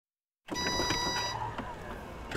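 Sound effect of a road vehicle with a steady electronic beep, starting about half a second in; the beep stops after just under a second and the vehicle noise fades away.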